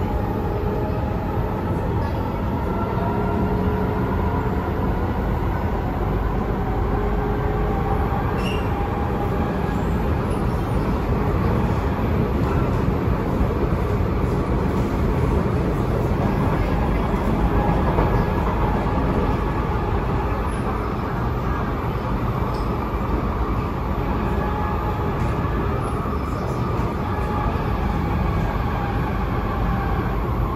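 Interior of a C751B MRT train running between stations: a steady rumble of wheels on rail, with a faint whine that drifts slowly in pitch.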